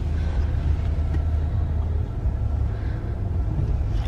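Chevrolet Suburban's engine running at low revs, a steady low rumble heard inside the cabin as the SUV backs out in reverse.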